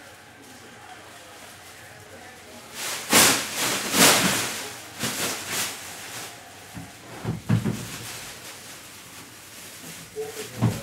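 Cardboard and plastic packaging rustling and tearing in several rasping bursts of about a second each, starting about three seconds in, followed by a few short knocks.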